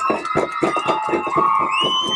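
Fast, even drumming, about five or six beats a second, with a high held whistling tone over it that jumps higher near the end.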